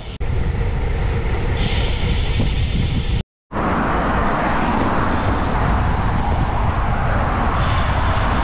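Wind noise on the microphone of a bicycle-mounted camera while riding, mixed with road traffic passing on the adjacent road. The sound drops out completely for a moment about three seconds in, where two clips are joined.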